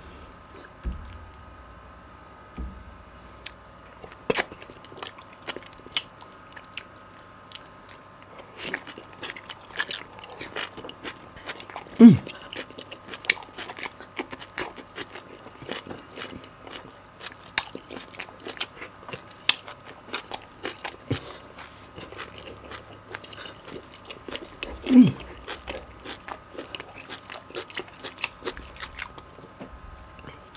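Close-miked wet eating sounds of a man chewing and smacking his lips on beef bone marrow and pounded yam in ogbono soup: many short, sharp mouth clicks throughout. A loud hum of pleasure ("Mmm!") comes about twelve seconds in, and another hum near twenty-five seconds.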